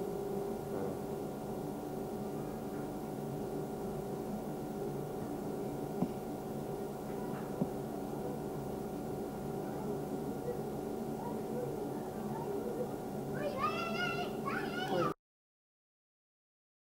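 Location sound with a steady hum. Near the end come two short, high calls that waver in pitch, and then the sound cuts off abruptly.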